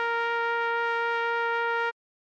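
Electronic trumpet sound holding one long steady note (written C, sounding concert B-flat) over a sustained Eb major chord, both cutting off abruptly just before the end.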